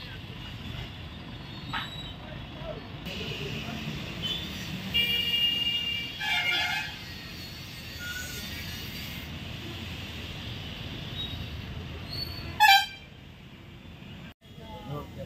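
Street noise with a vehicle engine running steadily. Horns toot about five and six and a half seconds in, and a short, loud horn blast comes near the end.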